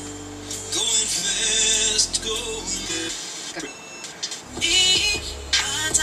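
Music with singing playing through the speaker of a 1948 Cadillac car radio converted with an auxiliary input; the bass drops away briefly midway.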